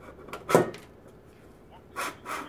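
Galvanized light-gauge steel C-stud being pressed into a U-track: a couple of small clicks, then one sharp clack about half a second in as the two profiles seat together.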